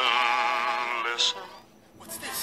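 A singer's voice from a song clip holds a long note with an even, wide vibrato, ends with a short 's' sound about a second in, and fades to quiet near the end.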